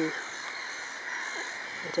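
A distant flock of black-headed gulls and jackdaws calling, a steady chatter of many birds at once.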